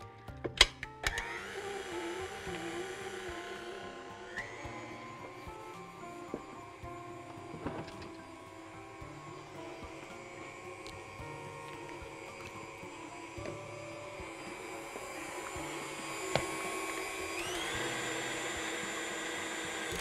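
Stand mixer running with its flat beater, mixing cream cheese and labneh into a smooth filling: a steady motor whine that starts about a second in after a few clicks, and rises in pitch near the end.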